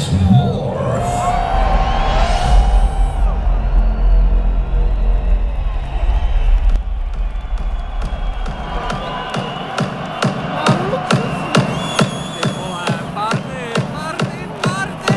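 A large arena crowd cheering and whooping over a deep electronic rumble as a dance-music set opens. About nine seconds in, a steady pulsing electronic beat comes in.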